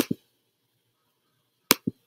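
Two sharp clicks about 1.7 s apart, each followed a split second later by a soft, low knock.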